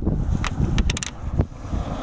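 Wind buffeting the microphone as a low rumble, with a few sharp clicks around the middle.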